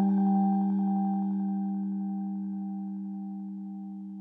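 Background music: a single held electronic keyboard tone that slowly fades away.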